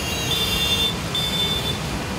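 A vehicle horn honks twice, a longer honk and then a shorter one about a second in, over the steady rumble of engines in slow, congested traffic.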